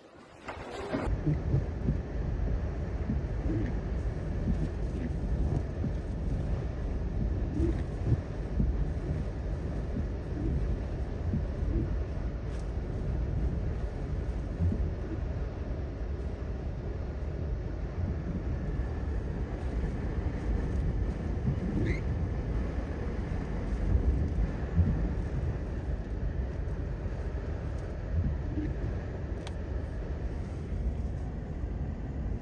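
Hurricane-force wind buffeting the microphone in a steady low rumble, with storm-surge waves washing and breaking over a flooded road.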